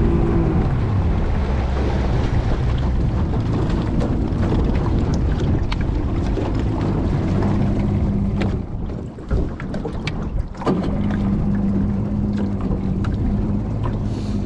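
Jet-drive outboard motor on a jon boat running. Its note falls as it is throttled back just after the start, and the boat comes down off plane. It then runs on at a lower, steady pitch, with a quieter dip about nine to ten seconds in before it steadies again.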